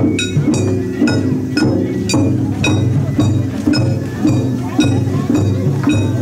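Japanese festival hayashi: a small hand gong (kane) is struck in an even clink about twice a second, over drumming and crowd voices.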